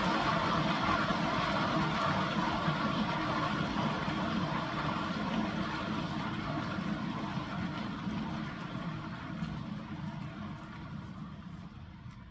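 Ball-bearing turntable spinning a wet acrylic-pour canvas, its steady whirring rumble starting suddenly and fading gradually as the spin slows down toward a stop.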